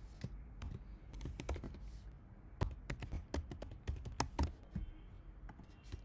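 Typing on a computer keyboard: irregular key clicks in short runs, busiest in the middle.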